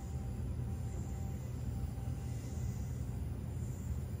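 Steady low hum and rumble with a faint even hiss over it, unchanging throughout, with no distinct events.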